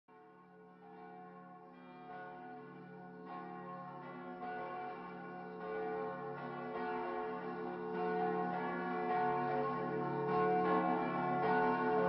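Church bells ringing with overlapping strikes about once a second, swelling steadily from faint to moderate: the bell intro of a heavy metal track, before the band comes in.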